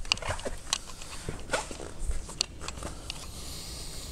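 Scattered clicks, knocks and rustling of a person climbing out of a car's driver's seat while holding the camera, with a short hiss near the end.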